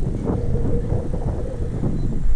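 Motorcycle running while being ridden, its engine note steady under rumbling wind buffeting the microphone.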